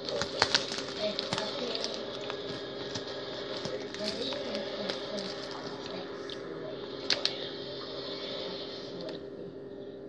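Plastic candy wrapper crinkling in two short bursts of sharp clicks, about half a second in and again about seven seconds in, over a steady hum.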